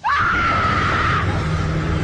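A sudden high-pitched scream swoops up, holds for about a second and breaks off. Under it, a loud low drone starts at the same moment and carries on.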